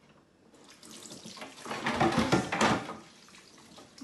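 Kitchen tap running into a stainless steel sink while a cloth is rinsed under it, the water splashing. It starts about half a second in, is loudest in the middle and dies down about three seconds in.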